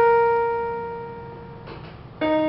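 A small electronic keyboard holding one piano-like note that fades away slowly over about a second and a half, the end of a phrase of the tune. A faint brief noise follows near the end.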